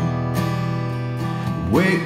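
Acoustic guitar strummed, its chord ringing on steadily between sung lines.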